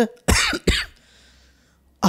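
A man coughs twice in quick succession, then there is a second of quiet with a faint low hum.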